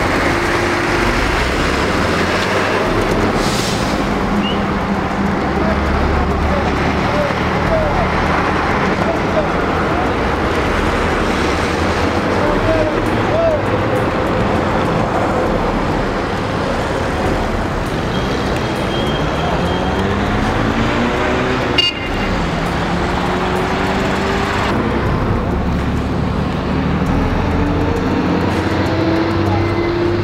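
Vehicle engine running amid road noise, revving up with its pitch rising twice in the second half. A single sharp knock about two-thirds of the way through.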